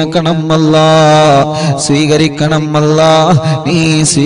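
A man chanting a supplication in long, drawn-out melodic phrases, holding steady notes that bend at the phrase ends, with a short break and a falling note about three seconds in.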